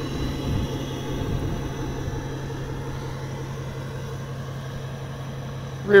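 A vehicle engine idling: a steady low rumble that eases slightly toward the end.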